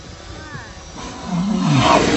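A whale blowing as it surfaces: a loud, breathy rush of air that swells in the second half, with a low tone that dips in pitch.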